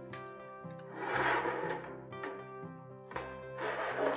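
Soft background guitar music, with two rubbing, scraping passes, about a second in and again near the end, as craft supplies and a tray are slid across a wooden tabletop.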